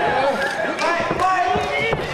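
Several voices calling out over one another, with a few thuds of feet on the wrestling ring's canvas mat.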